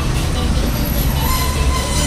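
Busy street background: a steady low traffic rumble with people talking nearby.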